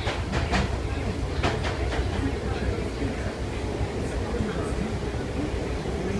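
Merseyrail electric train heard from inside the carriage: a steady low rumble of running with a few sharp clicks of wheels over rail joints, most of them in the first two seconds.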